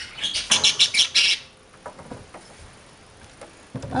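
A small pet parrot giving a quick run of short, scratchy chirps over the first second and a half, followed by a few faint clicks.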